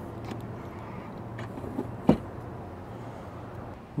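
A Tesla Supercharger connector is plugged into the Model Y's charge port, with one sharp click about two seconds in and a few faint ticks before it, over a low steady hum.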